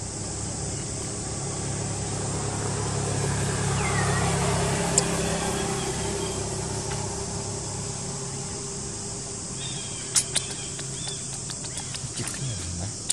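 A motor vehicle's engine hum that grows louder to about four seconds in and then fades as it passes, over a steady high insect buzz, with a short squeak near the middle and a couple of sharp clicks near the end.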